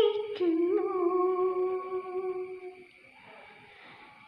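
A woman singing unaccompanied, holding one long steady note that fades out near three seconds in, then a short breath pause before the next phrase.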